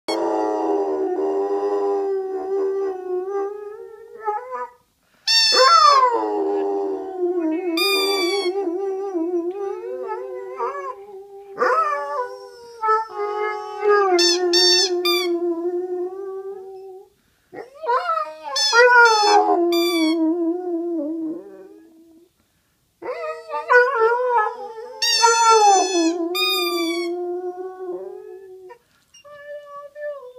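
A dog howling along in long, wavering notes, about five bouts with short breaks, mixed with repeated short high-pitched squeaks of a rubber duck squeak toy.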